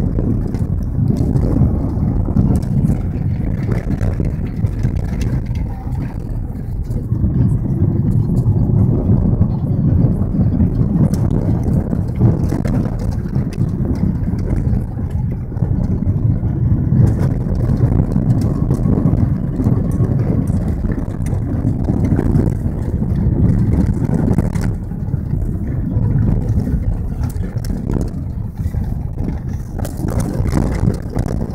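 Car driving along an unpaved dirt road, heard from inside the cabin: a steady low rumble of tyres and engine, with light clicks and rattles throughout.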